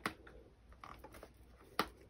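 Faint handling of a faux-leather planner folio, with a single sharp click near the end as the small pocket's magnetic flap is pressed shut.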